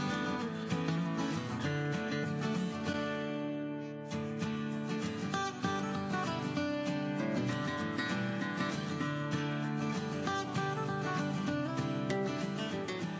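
Background music led by a plucked and strummed acoustic guitar.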